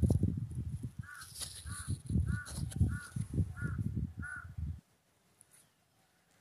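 A crow cawing six times in an even series, about two calls a second, over loud low rumbling noise on the microphone. All sound cuts off abruptly near the end.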